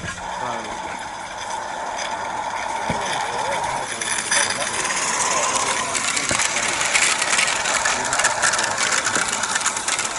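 A small garden-railway train of wooden wagons rolling along the track, its wheels clattering on the rails and growing louder as it passes close by, loudest near the end.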